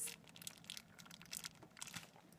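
Faint scattered crinkling and clicks of plastic wrapping and metal tongs being handled around a raw whole chicken.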